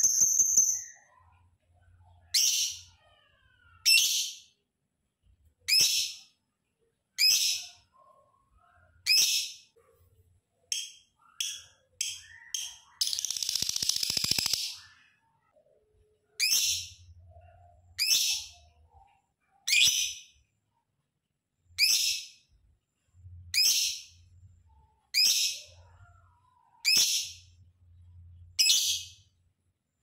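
A caged lovebird giving short, shrill, high-pitched calls, one about every second and a half to two seconds, with a quicker run of shorter calls near the middle. A harsh, noisy burst lasts about two seconds just after the middle.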